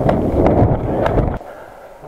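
Wind buffeting the microphone of a moving body-worn camera, a rushing noise that cuts off suddenly about one and a half seconds in, leaving faint hiss.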